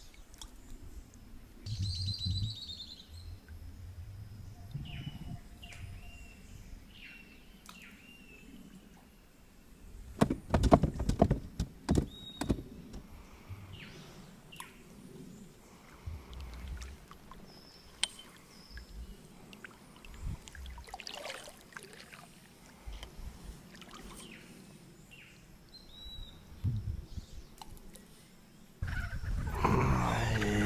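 Kayak paddling on a river, with birds calling: a clear ringing call about two seconds in and a few short falling chirps after it. About ten seconds in comes a burst of loud knocks and clatter, and scattered smaller knocks and paddle noise follow. A loud burst starts just before the end.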